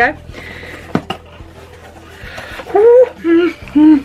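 A woman's excited wordless squeals: three or four short, high-pitched vocal noises in the last second and a half, after a quieter stretch with a sharp click about a second in.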